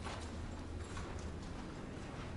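Footsteps of people walking quickly along a hallway, a few steps a second, over a steady low hum.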